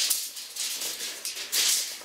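Tape measure being handled while a room is measured: short bursts of rattling and rustling, the longest and loudest near the end.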